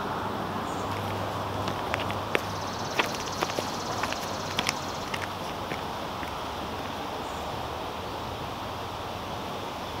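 Footsteps in espadrille wedge sandals on grass and gravel: a few light, irregular clicks and crunches in the first half, over a steady outdoor background hiss with a low hum.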